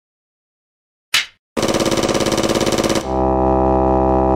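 Intro sound effects: a single clapperboard clap about a second in, then a fast stuttering synth pulse, about fourteen beats a second, that gives way to a steady held synth chord near the middle.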